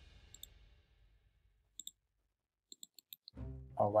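Computer mouse clicks. There are a few sparse single clicks, then a quicker run of several clicks near the end, made while choosing Copy and Paste from right-click menus.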